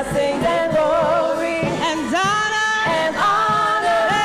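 Church praise team singing a gospel praise song into microphones, several voices together, with notes held for about a second near the middle.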